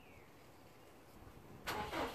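Quiet at first, then near the end the starter motor begins cranking the cold engine of a Subaru Impreza WRX STI, a quick, even run of cranking strokes getting louder.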